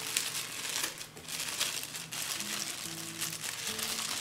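Thin clear plastic bag crinkling as the vacuum filter wrapped in it is handled, with irregular small crackles throughout.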